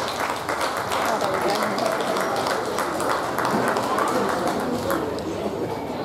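Indistinct, overlapping chatter of many voices from players and spectators along a rugby sideline, with no single voice standing out, plus scattered small clicks.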